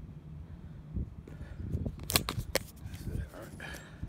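Camera handling noise: a quick cluster of sharp clicks and knocks about two seconds in as the camera is picked up off the court, with faint breathing and voice sounds around it.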